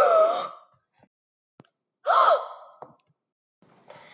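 A girl's two loud, breathy, high-pitched exclamations, like exaggerated gasps or mock screams. The first comes right at the start and the second about two seconds in, its pitch rising then falling.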